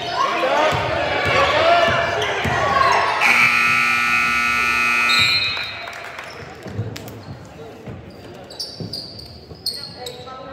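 A gym's electric buzzer sounds one steady, harsh tone for about two seconds, starting about three seconds in, over shouting voices. After it come a few separate thuds of a basketball bouncing on the hardwood floor.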